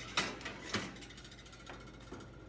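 A glass baking dish pushed onto a wire oven rack and the rack slid in on its metal runners, with two sharp clatters in the first second and lighter rattles after.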